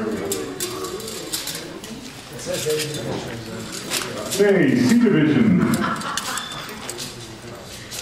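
Indistinct voices talking in a room, with one louder voice about four and a half seconds in whose pitch slides down.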